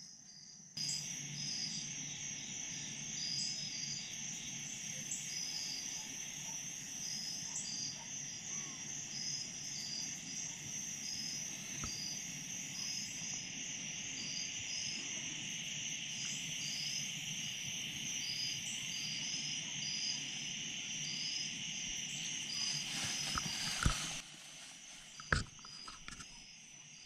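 Evening chorus of crickets and other insects: a steady high trill with short chirps repeating over it. It cuts off sharply near the end, followed by a couple of sharp knocks.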